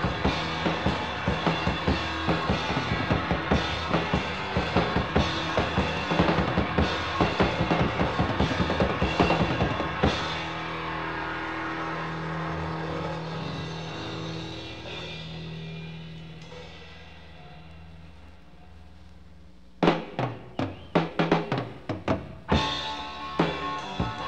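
Live rock band with drum kit playing fast and busy, ending about ten seconds in. Held notes then ring out and fade for about ten seconds. Separate drum strikes start the next song near the end.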